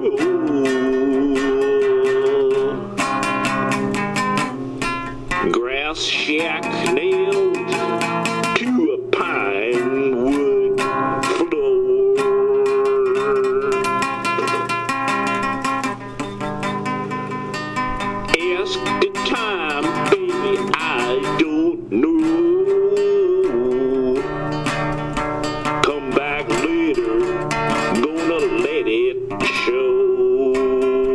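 Acoustic guitar music with no singing: plucked guitar accompaniment under a long-held melody line with vibrato, an instrumental break.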